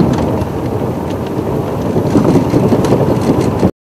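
Safari game-drive vehicle driving along a bush track: steady low engine and road rumble with wind buffeting the microphone and a few light knocks. The sound cuts off suddenly near the end.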